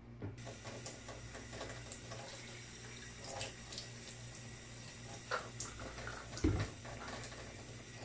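Tap water running into a plastic spray bottle, filling it up with water to dilute the bleach and degreaser already in it. A few light knocks and a dull thump about six and a half seconds in.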